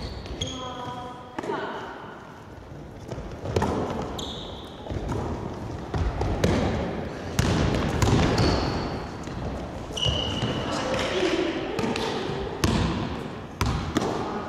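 Basketball play on a wooden gym floor: a basketball bouncing as it is dribbled, thuds of running feet, and several short, high sneaker squeaks, with players' voices in a large, echoing hall.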